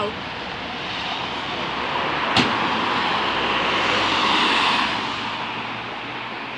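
Road traffic passing by, a vehicle's noise swelling to its loudest about four to five seconds in and then fading. A single sharp click sounds about two and a half seconds in.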